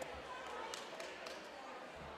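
A basketball bouncing a few times on a gym's hardwood floor, with sharp knocks, over the steady chatter of a crowd echoing in the gymnasium.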